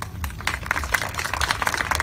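A small crowd applauding: many overlapping hand claps that start a moment in and grow denser.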